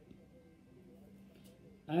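Near silence: quiet room tone with a faint steady low hum, until a man's voice starts right at the end.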